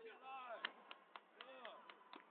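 Taekwondo sparring: several sharp smacks, the loudest a little over half a second in, amid voices calling and shouting around the mat.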